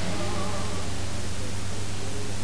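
Steady hiss with a low hum underneath: background noise of the recording, with no distinct event. A faint tone trails away in the first second.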